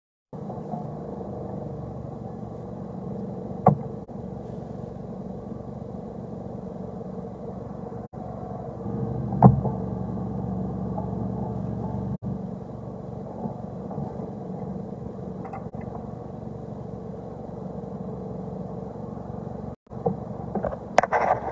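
Car engine and road rumble heard from inside the cabin: a steady low hum. Two short sharp knocks stand out, about four seconds in and again near the middle, and the sound cuts out very briefly a few times.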